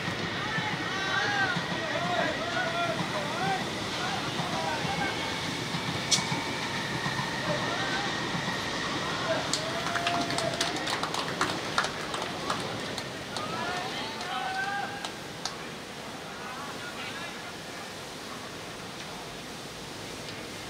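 Players shouting and calling across an outdoor football pitch, with a sharp kick of the ball about six seconds in. A run of quick hand claps and shouts follows as a goal is celebrated.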